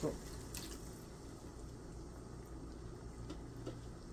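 Pan of fish broth, just topped up with cold water, simmering quietly on an electric stove: faint bubbling and a few soft ticks over a low steady hum.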